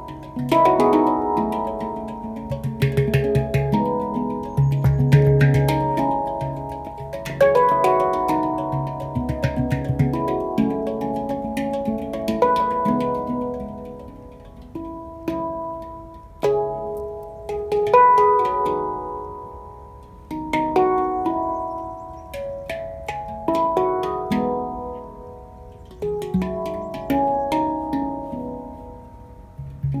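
Two handpans played together by hand: struck steel notes ringing and fading, with deep low notes at times and quick runs of light taps, the playing swelling and easing off in phrases.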